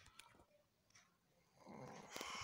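Near silence, with a few faint clicks early on and a soft breath-like noise coming in near the end.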